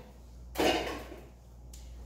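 A single clatter of kitchenware being handled, about half a second in, dying away over about a second, over a low steady hum.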